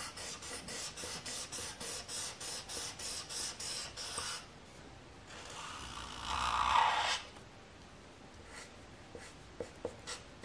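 Felt-tip marker scribbling on paper in quick back-and-forth strokes, about five a second, for the first four seconds, then one longer, louder rubbing stroke about five to seven seconds in. A couple of light taps come near the end.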